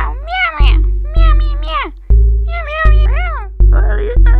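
A cat meowing in a quick run of short meows, each rising and falling in pitch, over background music with a heavy, repeating bass beat.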